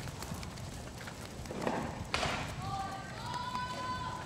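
Footsteps of sandals and small dogs' paws pattering on concrete, with one sharp click about two seconds in from a dog-training clicker. A faint distant voice calls out on a held pitch near the end.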